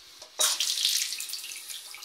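Chrome pillar tap turned on about half a second in, water gushing into a ceramic washbasin; the sound comes in suddenly at its loudest and then eases to a steadier flow.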